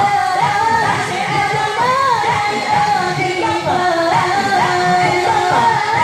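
A group of women singing an Islamic devotional chant together, a melodic line with long held notes.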